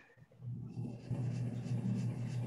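A steady low hum with faint hiss, coming in about half a second after a brief silence: background noise picked up by an open microphone on a video call.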